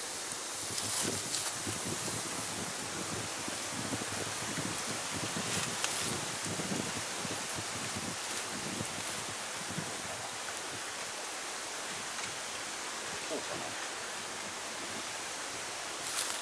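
Steady outdoor hiss with a few faint rustles and light taps as a cut tree branch is handled and held up against a frame of lashed branches.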